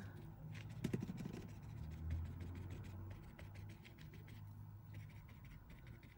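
Faint scratching of a small paintbrush scrubbing alcohol ink into linen, a rapid run of fine scratches, over a faint low hum.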